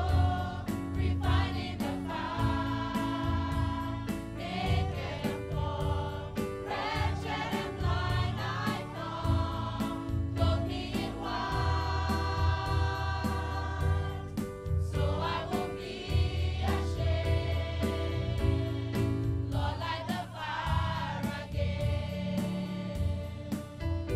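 Gospel choir singing over a band, with a steady drum beat and a deep bass line.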